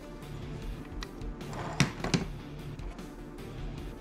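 Two sharp clicks about two seconds in, a third of a second apart, from the zero-insertion-force socket lever of a chip burner being thrown to free the erasable chip. Quiet background music runs under them.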